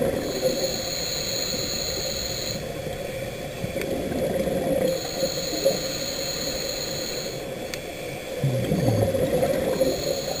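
Underwater sound of a diver breathing through a scuba regulator. Each inhalation, about every five seconds, carries a thin high tone, and a low bubbling rumble comes between them near the end, as air is breathed out.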